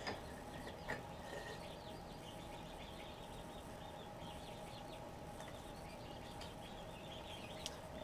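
Quiet workshop room tone with a low steady hum, faint light scratching of a pencil marking a wooden leg against a metal square, and a couple of soft clicks about a second in and near the end.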